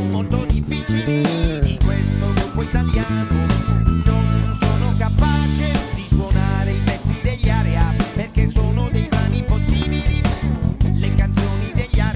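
Six-string electric bass played fingerstyle, a busy line of quickly changing notes, along with a full band recording of the song with steady drum hits throughout.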